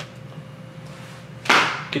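A short, sharp rustle of plastic meat packaging being handled and pushed aside, about one and a half seconds in, after a moment of quiet.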